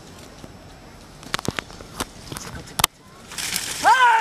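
Leaves and twigs crackling in a run of sharp snaps as someone pushes into a bush. Near the end comes a rising rustle, then a loud voice shouting.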